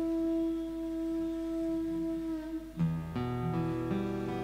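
A harmonium holds one steady drone note. About three seconds in, fuller chords and strummed acoustic guitar come in as the next devotional song starts.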